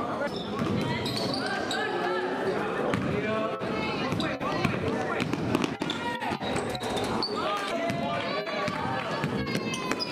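Basketball game sound in a school gym: many voices of spectators and players talking and calling out, with a basketball bouncing and hitting the hardwood floor again and again.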